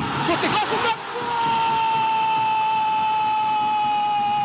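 Football commentator shouting excitedly for about a second, then holding one long drawn-out goal call on a single pitch that sags slowly.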